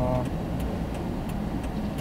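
Steady low engine and road noise inside a moving car's cabin, after the last trailing syllable of a man's voice.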